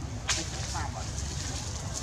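Dry leaf litter crackling underfoot, with one sharp snap about a third of a second in and a few lighter crackles after it, over steady outdoor background noise.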